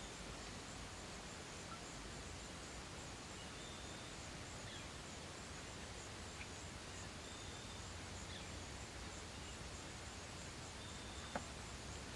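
Faint steady outdoor background hiss, with a few brief high chirps scattered through and a small click near the end.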